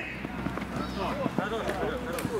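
Men's voices calling out across an outdoor football pitch, fainter than the nearby shouting around it, with a few short knocks and a low steady rumble underneath.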